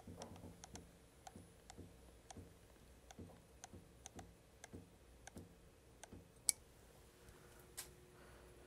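Faint clicks of a CNC mill's MPG hand wheel being turned one detent at a time, about two or three a second, jogging the Z axis down to bring the end mill just above the bed. A sharper click comes near the end, over a faint steady hum.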